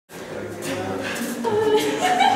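Voices singing without accompaniment, the notes held longer from about halfway in.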